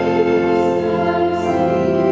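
A hymn sung with organ accompaniment: sustained organ chords under singing voices.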